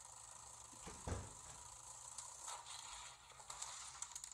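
Wind-up timer of a Perfection shape-sorting board game ticking while pieces are put in, with a single thump about a second in.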